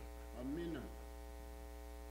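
Steady, low electrical mains hum, a buzz of many even overtones, with a brief faint voice sound about half a second in.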